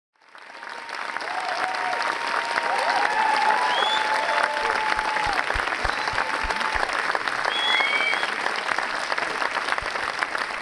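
Audience and cast applauding in a theatre, fading in at the start and then holding steady, with a few cheering voices and high whistles over the clapping.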